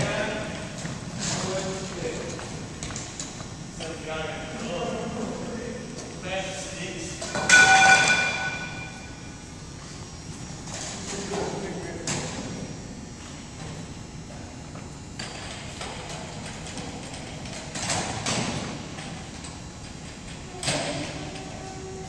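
Echoing gymnasium hubbub: distant chatter from a group of students, with scattered thumps and knocks as plastic scooter boards are carried off and put away. A brief, loud pitched sound comes about eight seconds in.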